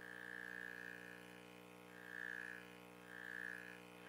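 Quiet pause with a faint steady electrical hum, and three soft high tones, each under about a second long, coming at intervals of about a second.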